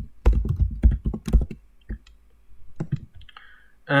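Computer keyboard typing: a quick run of about ten keystrokes in the first second and a half, then a couple more clicks near three seconds in.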